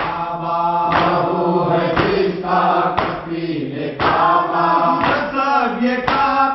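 Group of men chanting a Muharram noha (mourning lament) together, with a sharp chest-beating slap (matam) keeping time about once a second.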